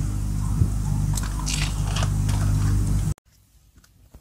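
A steady low hum with a few short crinkles and rustles of a plastic-wrapped food box being handled. The sound cuts off abruptly about three seconds in, leaving only faint small ticks.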